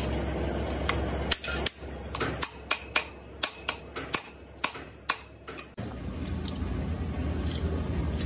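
A run of sharp metallic clicks and clinks, about a dozen over four seconds, as steel tools are handled against a machined cylinder head, over a steady low hum. Near the end the hum gives way abruptly to a louder, steady rumble.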